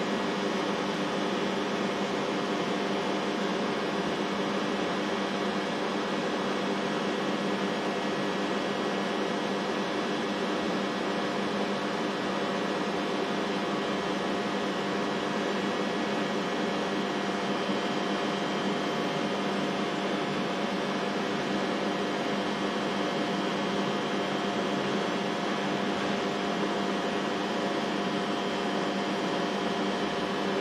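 Steady machinery hum with several fixed pitched tones over a constant rushing noise, unchanging throughout: background running equipment and ventilation in an industrial control room.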